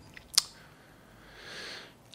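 A single short mouth click about half a second in, then a soft breath drawn in near the end.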